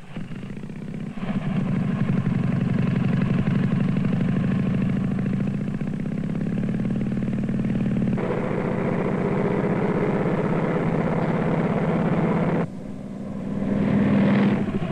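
Motorcycle engine running, getting louder about a second in and staying loud, with a sudden drop in level near the end before it rises again.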